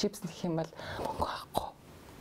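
Speech only: a woman talking softly, with a breathy, half-whispered stretch in the middle.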